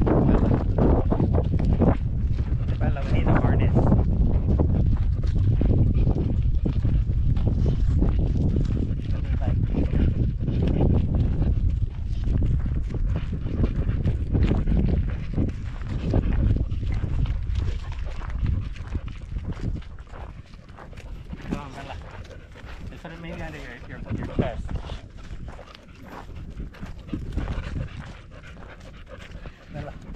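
Handling noise from a camera riding on a dog's back: fur and mount rubbing on the microphone give a heavy low rumble for most of the first two thirds. After that it turns quieter and irregular, with dog sounds.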